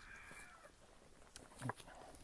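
Very quiet farmyard: a faint animal call in the first moment, then near quiet with a short soft knock a little before the end.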